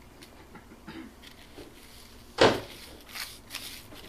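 A single sharp knock about two and a half seconds in, with faint clicks and light rustling of small objects being handled around it.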